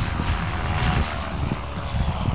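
Pegasus Quantum flex-wing microlight's engine droning as it flies past low, heard over heavy wind rumble on the microphone.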